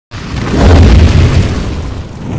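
Cinematic boom sound effect: a deep hit that starts suddenly, swells to its loudest within the first second, then slowly dies away.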